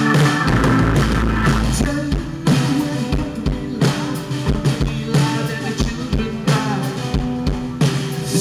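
Live rock band playing through a stage PA: electric guitars, bass guitar and drum kit. A dense held chord opens it, then the drums keep a steady beat under the guitars.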